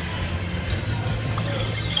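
Video slot machine playing its picking-bonus music, with an electronic sound effect that falls in pitch near the end.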